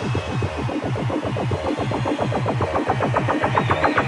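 Electronic dance music with a low, pulsing bass beat and a drum roll that speeds up toward the end, building up to a drop.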